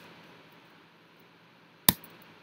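A single sharp keystroke on a computer keyboard near the end, over a faint steady hiss.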